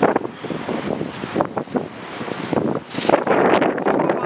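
Wind buffeting the microphone: a rough, gusting rush that rises and falls unevenly.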